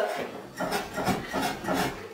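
Someone working on wooden steps: a series of irregular knocks and rubbing, scraping sounds of the wood, the sign of steps that the residents call dangerous.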